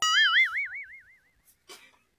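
A cartoon-style 'boing' sound effect: a single wobbling, warbling tone that starts abruptly and fades out over about a second and a half.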